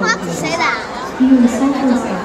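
Children's voices and chatter from a crowd of visitors, with a high-pitched child's voice at the start and a louder, lower voice in the second half.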